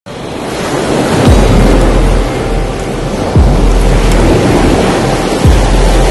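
Stormy-sea sound effect of surging surf and wind, with music underneath. Three deep booms come about two seconds apart, each dropping in pitch and leaving a low rumble.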